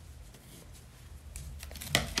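Scissors cutting a strand of crochet yarn, with faint rustling of the crocheted fabric being handled and a sharp click just before the end.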